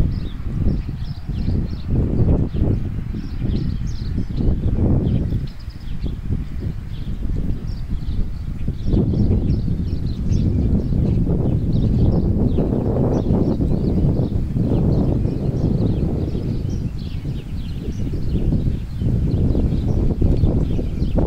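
Wind buffeting the phone's microphone in uneven gusts, with birds chirping and singing steadily in the background.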